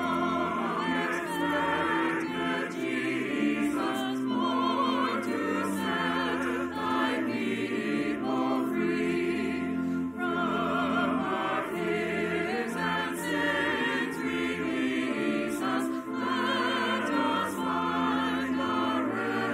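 A choir sings in long held notes with vibrato over steady, sustained accompanying notes.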